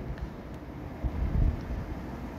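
Low, steady background rumble in a pause between speech.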